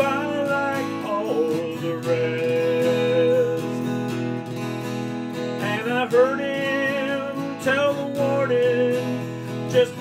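Male voice singing a slow country ballad over a strummed McPherson Sable carbon-fibre acoustic guitar, in several sung phrases over steady strummed chords.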